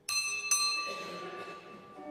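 Sacristy bell in a church struck twice, about half a second apart, each strike ringing on with several high tones for over a second. It signals that the servers and priest are coming out to begin mass.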